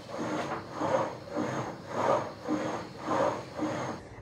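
Octane Fitness elliptical trainer in use, its pedals and flywheel making a noisy swell with each stride, about two a second, in a steady rhythm.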